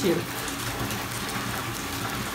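Water running from a bathtub tap into a filling tub, a steady rush.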